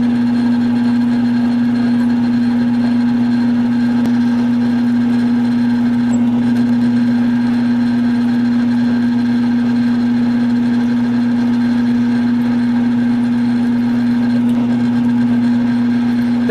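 Belt-driven round column mill-drill running at a slow belt speed, its motor and spindle giving a strong, steady hum while the drill is fed down by hand into the workpiece.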